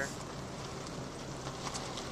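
Steady road and engine noise of a car driving slowly, heard from inside the car, with a faint low hum.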